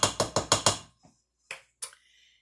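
Rapid, even tapping, about eight taps a second, of a plastic measuring cup against the rim of a mixing bowl to knock out the last of the relish; it stops just under a second in. Two single clicks follow near the end.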